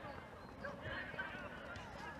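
Faint shouts and calls from football players across the pitch, several short voices overlapping over a low outdoor hum.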